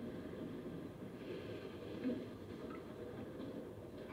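A quiet stretch: faint steady background hiss, with a soft short sound about two seconds in.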